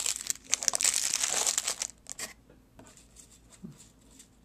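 Plastic and foil snack wrappers crinkling as the packages are put back into a cardboard box. The rustling is busiest in the first two seconds, with a few fainter rustles after.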